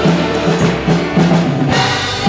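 Live worship music from a church praise band, with drums and a low bass line to the fore in a steady rhythm.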